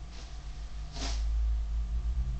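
A replica longsword being swung through the air close to the microphone: a short whoosh about a second in, over low rumbling movement noise that grows louder after it.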